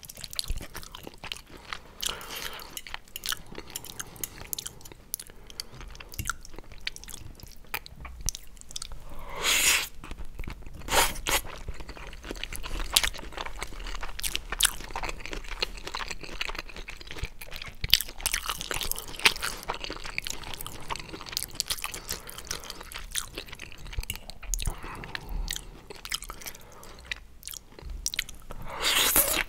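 Close-miked chewing of squid ink pasta with shrimp: wet mouth sounds and a dense run of small clicks and crackles, with a louder moment about nine to ten seconds in.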